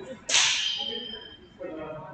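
A single sharp smack about a third of a second in, echoing in the gymnasium, with a faint high ringing tone fading away over about a second after it.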